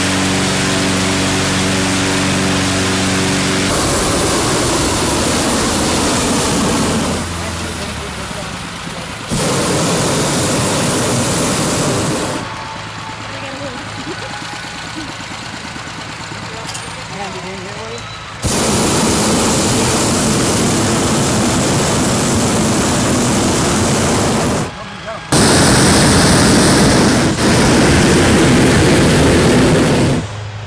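Hot-air balloon inflation: a petrol-engined inflator fan running steadily with a loud rush of air, then several long blasts of the propane burner, each several seconds long, cutting in and out abruptly.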